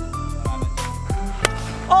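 Background music with a steady beat of deep drum hits. About one and a half seconds in comes a single sharp crack: a plastic wiffle bat hitting the ball for a home run.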